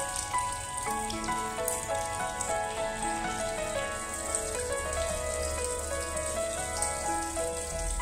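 Water trickling and splashing from a small pump-fed fountain, falling from a clay pot over rocks into a basin, with soft instrumental music playing over it.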